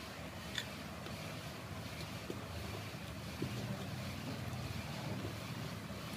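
Steady low background hum, with a sharp click about half a second in and a few faint ticks later as a fork stirs flour and egg in a ceramic bowl.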